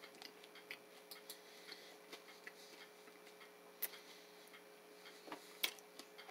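Very quiet mouth sounds of chewing a chewy granola bar: faint, irregular soft clicks, a few more toward the end, over a faint steady hum.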